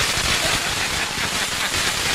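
A string of firecrackers going off: a dense, unbroken crackle of rapid small bangs.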